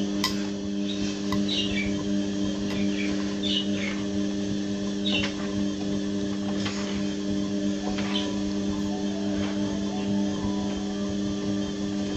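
Front-loading washing machine mid-wash: the drum motor hums steadily while the tumbling clothes and soapy water give a short swish about every second and a half.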